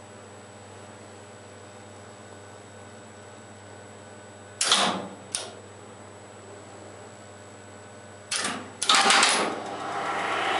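Heavy contactors in an Express Lifts relay controller cabinet clacking as they pull in for a lift call: two sharp clacks about halfway through, then a louder cluster of clacks near the end as the motor-up, line-power and high-speed contactors close to start the lift upward. A steady low hum runs underneath.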